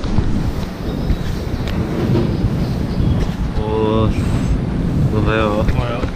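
Crowded train station platform ambience with a heavy, steady low rumble and wind noise on the action-camera microphone. Short bursts of voices come about three and a half seconds in and again near five seconds.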